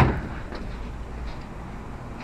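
Low, steady background rumble with no distinct event.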